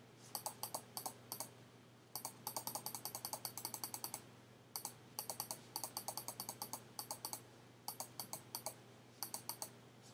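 Computer mouse button clicked in quick runs of about four or five clicks a second, each click placing a brush dab, with short pauses between runs. A faint steady hum sits underneath.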